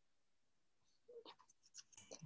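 Near silence: a pause on a video call, with a couple of faint, brief sounds in the second half.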